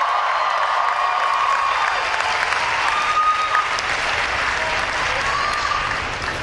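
A large hall audience applauding steadily, with a few drawn-out calls from the crowd rising over the clapping.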